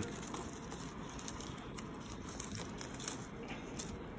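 Faint, scattered rustling of a dry palm-leaf strip being knotted around a lulav bundle, over a steady low background hiss.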